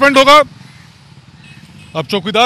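A man speaking Hindi, then a pause of about a second and a half in which only faint road-traffic noise is heard, before his speech starts again at the end.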